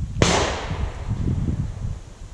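A single sharp bang about a quarter second in, its echo dying away over about a second.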